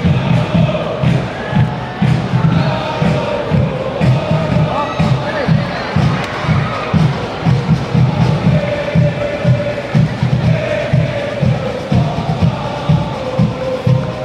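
Selangor ultras crowd chanting a football chant in unison over a steady drumbeat of a few beats a second.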